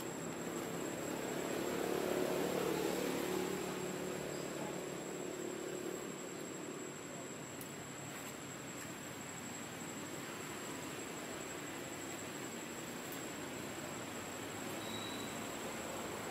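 Steady outdoor background hiss with a thin, steady high insect whine; a low hum swells and fades over the first few seconds.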